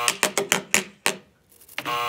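A rapid run of sharp clicks from a spinning prize wheel, coming further apart and dying away about a second in as the wheel slows.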